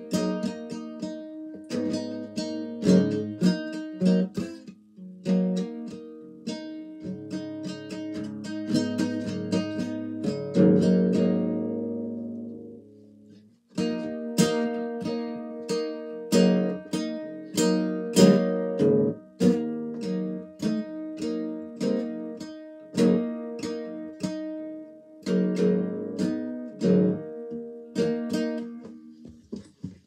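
Classical acoustic guitar strummed and picked with a plectrum, loose unplanned chords struck one after another. A little after ten seconds in, a chord is left to ring and fade almost to silence, and the playing starts again about three seconds later.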